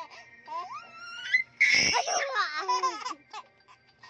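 A baby laughing and squealing: a rising squeal about half a second in, a loud shriek near the middle, then a run of wavering laughs that fades out near the end.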